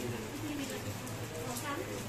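Indistinct background chatter of several people talking at once in a room, with no clear single voice.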